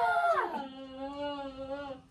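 A long drawn-out wailing cry from a person, its pitch dropping about half a second in and then held level until it fades near the end.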